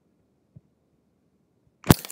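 Near silence, with a faint tick about half a second in and one sharp, loud click near the end.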